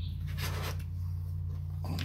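Faint rustling and scraping of something being handled close to the microphone, over a steady low background hum.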